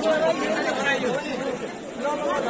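Several people talking at once in overlapping crowd chatter, with no single voice standing out.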